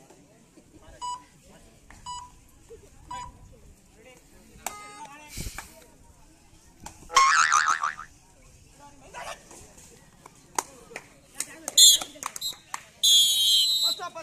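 A referee's pea whistle blown in a loud, high trilling blast near the end, stopping play in a kabaddi raid. Before it come three short beeps about a second apart, and a loud shout from the players around the middle as the raider is caught.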